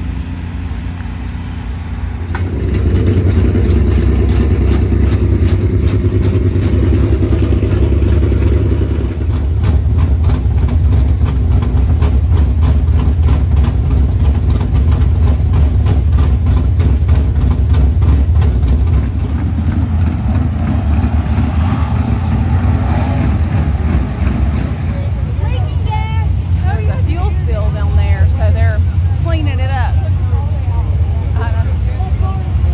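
A dirt late model race car's V8 engine starts up about two seconds in and keeps running at a steady, loud idle as the car is readied for hot laps.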